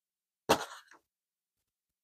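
A single short, soft thump with a papery rustle about half a second in, as a folded cardstock journal page is laid down on a cutting mat.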